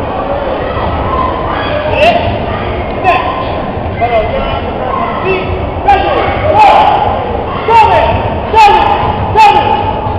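Voices and chatter in a large, echoing gymnasium hall, broken by sharp knocks and thuds that come irregularly from about two seconds in and more often in the second half.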